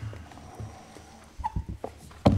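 A quick cluster of three or four dull knocks about a second and a half in, over a steady low room hum.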